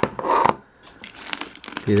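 A clear plastic bag rustling and crinkling as it is drawn out of a plastic bicycle tool bottle. There is a short rustle at the start, then a quick run of sharp crackles in the second half.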